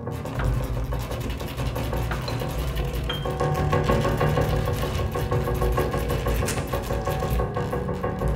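Experimental chamber music for pianos and percussion: a dense, noisy texture of scrubbing on paper and objects over a low background buzz, with sustained pitched tones joining about three seconds in.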